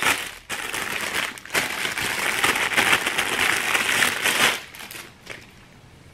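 Clear plastic packaging bag crinkling and rustling as it is opened and pulled off a massage brush, for about four seconds, dying away about four and a half seconds in.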